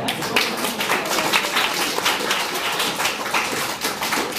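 Audience applauding: a dense, irregular run of hand claps.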